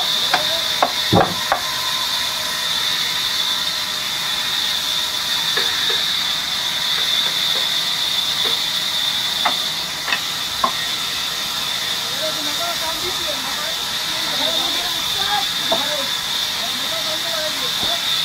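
Band saw in a sawmill running and cutting through a large wood slab, a steady high-pitched hissing whine. A few sharp knocks come about a second in and again near the middle.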